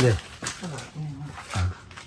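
A man's voice in short, low, broken phrases, with a brief sharp noise right at the start.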